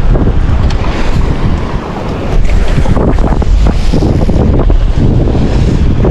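Wind buffeting a GoPro's microphone in a loud, steady rumble, with sea waves washing in underneath.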